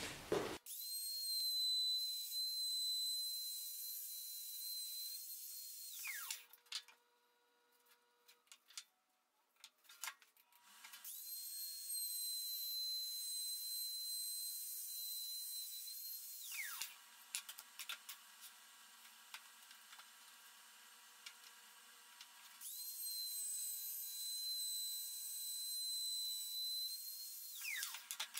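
Electric router cutting V-grooves into MDF along a straight-edge guide, run three times: each pass is a steady high whine of about five seconds that falls in pitch as the motor spins down, with short quiet pauses and a few clicks between passes.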